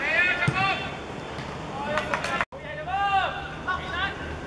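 Footballers shouting on the pitch during play, short arching calls, with a single sharp thud of a ball being kicked about half a second in. The sound cuts out completely for a moment about halfway through.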